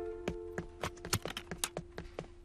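A single held instrumental note, slowly fading, under light quick taps at about three or four a second: footstep sound effects of a small figure walking on a wooden floor.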